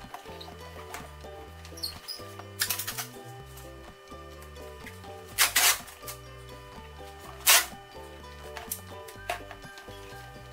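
Duct tape being pulled off the roll in a few short, loud rips, the loudest about seven and a half seconds in, over background music with a steady bass line.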